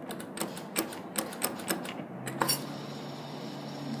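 Claw machine mechanism at work: a few irregular clicks and knocks, then a steady motor hum from about halfway through as the claw moves.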